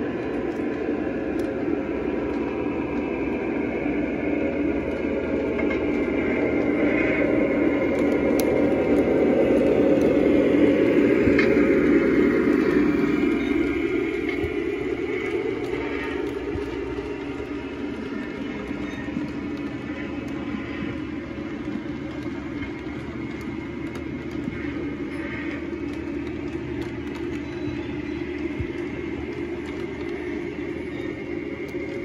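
Model diesel train running past on layout track: a steady rolling rumble that grows louder over about ten seconds as the locomotive approaches, peaks around twelve seconds in, then settles lower as the freight cars roll by, with faint scattered clicks from the wheels.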